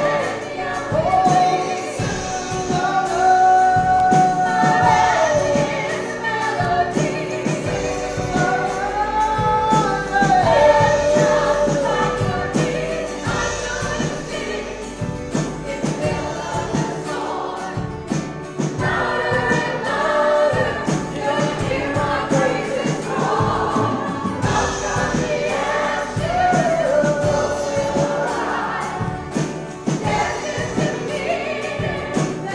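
Live worship band performing a song: voices singing a slow melody over a strummed acoustic guitar and a second guitar.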